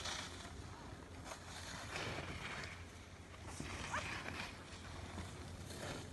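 Faint scratchy swish of skis sliding over snow, with a brief far-off voice about four seconds in.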